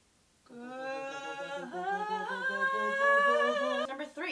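Two women's voices singing long wordless notes together, a cappella. One voice starts about half a second in, a second, higher voice joins near the middle to make a harmony, and both stop just before the end.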